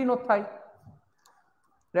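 A man's voice trailing off, then about a second of near silence in a small room with a faint click or two.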